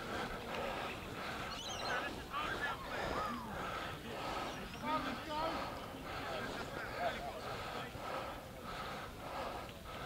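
Indistinct voices of players and people around a rugby field, heard at a distance over steady outdoor background noise.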